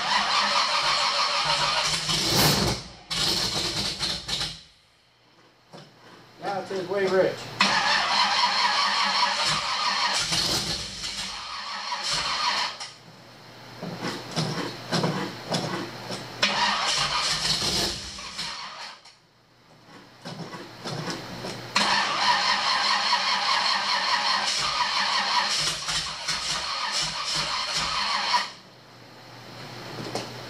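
Repeated attempts to start the Suburban's carbureted engine: four bursts of cranking, each several seconds long, with short pauses between, the engine struggling to fire and run.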